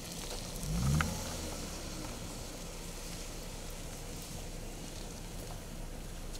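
Steady low rumble of vehicles idling, with a brief, louder low sound about a second in.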